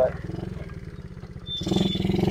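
Coolster 70cc pit bike's small single-cylinder four-stroke engine idling with a fast, even putter. It grows louder about a second and a half in.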